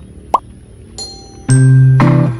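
A quick rising pop sound effect about a third of a second in, then a bell-like chime at one second, and a bright background tune with mallet-percussion notes starting loudly at about one and a half seconds.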